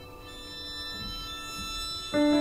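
Chamber ensemble playing minimalist classical music: a quiet, sustained chord of bowed strings and keyboard.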